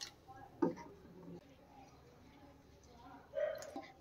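Quiet room tone with one faint knock a little over half a second in and a few soft clicks.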